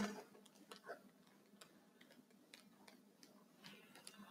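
Near silence: faint room tone with a scattering of small, irregular clicks.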